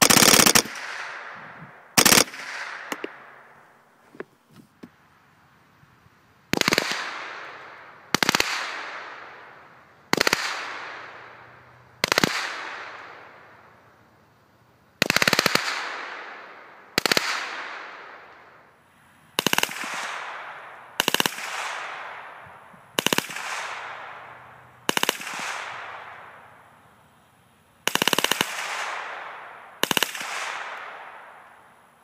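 Semi-automatic rifle bump-fired from a truck-mounted Recoil Rail pintle in short bursts of rapid shots: about a dozen bursts, one every two seconds or so, each followed by a long fading echo.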